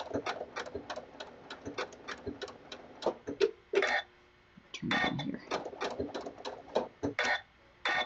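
Janome MC9450 sewing machine stitching a blanket stitch at slow speed, the needle ticking about five or six times a second. It stops for under a second about four seconds in, then starts stitching again.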